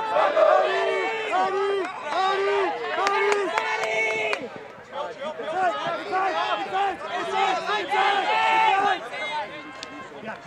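Many men shouting and calling out over one another from the sideline of an ultimate frisbee game: drawn-out yells and quick calls overlapping all through, briefly quieter about halfway.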